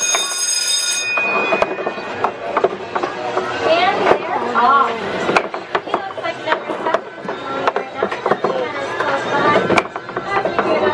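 Carnival ball-throw mammoth racing game starting up: a steady start tone for about the first second, then wiffle balls knocking and bouncing on the slanted game board and into its holes in many quick, irregular knocks, with voices around.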